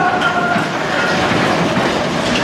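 Matterhorn Bobsleds roller-coaster sled running steadily along its steel track, a continuous rumble with faint steady tones over it.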